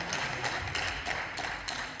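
A pause in a speech: faint room noise of a large debating chamber picked up by the lectern microphone, with a few light taps.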